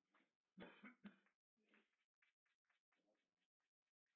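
Faint clicks of carom billiard balls in play, knocking against each other and the cushions after a shot, with one sharper knock about a second in and softer ticks after it. A cough a little over half a second in.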